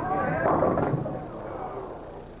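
Bowling ball crashing into the pins, leaving the 10 pin standing, with crowd voices rising over the pin clatter.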